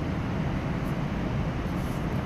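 A steady rushing background noise with a low rumble underneath, even throughout, with no distinct events.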